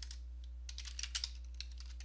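Typing on a computer keyboard: a few keystrokes near the start, then a quick run of keystrokes in the middle. A steady low hum sits underneath.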